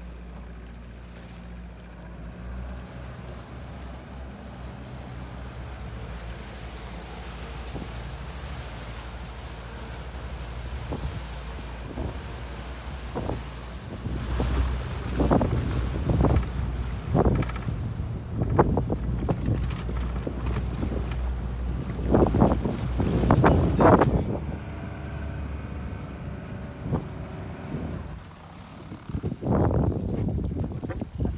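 A 115 hp four-stroke outboard motor running as the boat crosses choppy water, with wind on the microphone. About halfway through it gets louder, with gusts and thumps, then eases off a few seconds before the end as the boat comes up to a floating duck.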